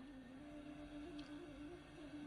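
Near silence in a pause between spoken phrases, with a faint steady low hum underneath.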